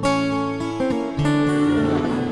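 Background music led by plucked acoustic guitar, with new notes struck about a second in.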